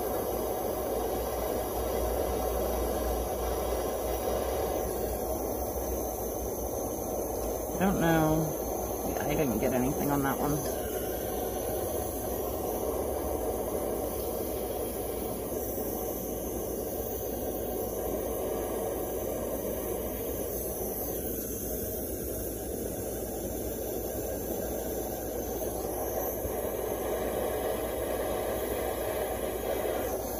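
Jeweller's soldering torch flame giving a steady rush of noise as the solder is melted. A short vocal sound comes about eight to ten seconds in.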